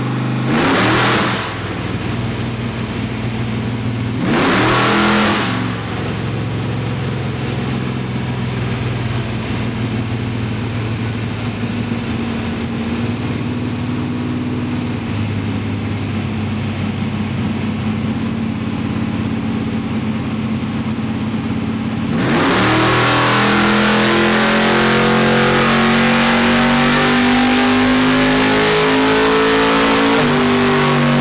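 Ford 289 small-block V8 in a drag car running on a chassis dyno. It is blipped twice in the first few seconds, then runs steadily at part throttle. About 22 s in it goes to full throttle for a power pull, getting louder and rising steadily in pitch as it climbs to around 6,400 rpm.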